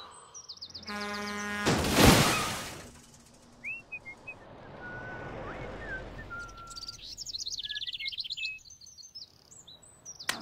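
Cartoon sound effects: a vehicle horn blast about a second in, then a loud crash just after two seconds that dies away, as the tanker truck comes to lie overturned. After it, birds chirp and whistle, with a quick run of chirps near the end.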